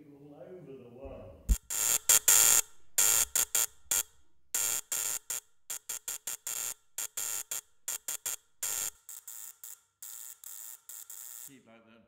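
Spark-gap transmitter keyed with a Morse key: the spark gap buzzes and crackles in loud bursts of short and long length, dots and dashes of Morse code, stopping shortly before the end.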